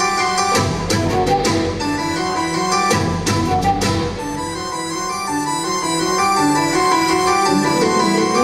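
Live rock band playing an instrumental passage: keyboards, electric guitars, bass and drums. Cymbal crashes ring over the band for about the first four seconds, then stop, leaving a quick run of keyboard notes over the guitars and bass.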